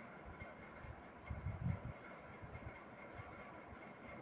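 Faint low background rumble with a few soft low thuds about a second and a half in, over a faint steady hiss.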